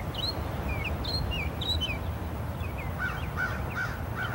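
Outdoor birdsong: many short, quick chirps, then about three seconds in a run of four evenly spaced, lower repeated calls, over a steady low rumble.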